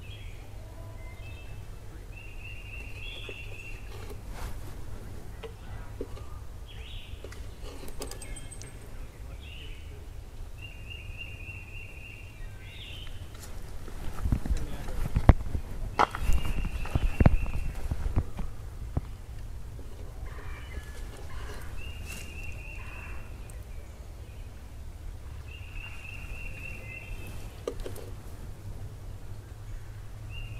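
A small bird singing the same short trill five times, several seconds apart, over a steady low outdoor rumble. In the middle come a few seconds of louder rumbling and knocks, the loudest part.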